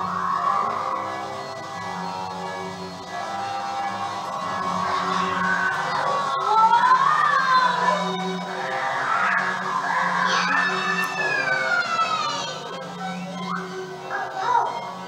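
Cartoon soundtrack playing from a TV: orchestral background music with held notes. A rising sliding tone comes about halfway through, and a long falling slide runs from about ten seconds in.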